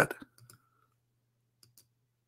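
A few faint clicks from working a computer, one about half a second in and two close together near the end, as a dialog box is opened on screen.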